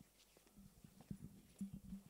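Near silence: faint room tone with a low steady hum and a few soft, scattered knocks.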